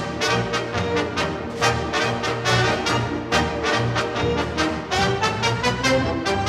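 Theatre pit orchestra playing the opening bars of a show tune, brass to the fore, in a brisk beat of accented chords.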